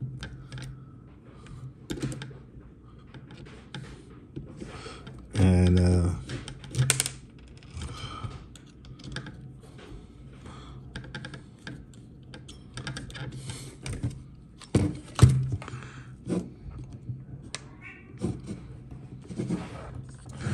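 Irregular small clicks and taps as a hex driver turns screws through the corners of a small cooling fan into a plastic 3D-printed printhead mount, with hands handling the plastic parts. The sharpest clicks come about two-thirds of the way in.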